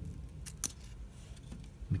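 Paper trading cards handled in a stack, one card slid off the front, with a couple of short crisp snaps of card stock a little past halfway.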